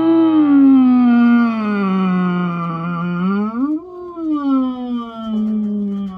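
Man's voice singing a wordless, drawn-out note that slides down from high to low and holds, then swoops quickly up and back down and holds again.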